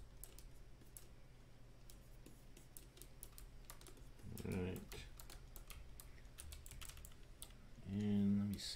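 Faint, irregular clicking of a computer keyboard and mouse, a few clicks a second, over a steady low hum. A brief murmur of voice comes about halfway through.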